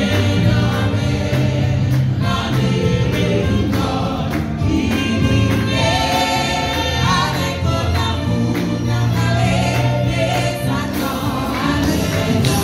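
A group of voices singing a gospel hymn in Haitian Creole together, with instrumental accompaniment carrying a strong bass line and a steady beat.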